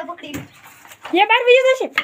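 A child's voice giving one long, high, wavering call about a second in, after some faint short sounds.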